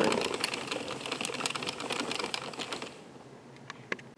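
Addi Express circular knitting machine being cranked by hand, its carriage clattering over the plastic needles as it knits rounds. The cranking stops about three seconds in, and there is a single click near the end.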